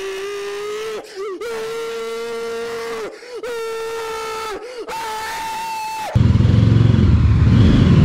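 A man's voice yelling in long, steady held notes, four of them with short breaks between, the last one higher. About six seconds in it cuts suddenly to the louder low rumble of the Mahindra Mojo's 295 cc single-cylinder motorcycle engine running.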